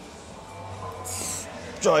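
A man straining through the last rep of a heavy dumbbell bench press to failure: a low strained sound, then a short hissing breath out about a second in, over gym room noise. A shout of "drive" comes at the very end.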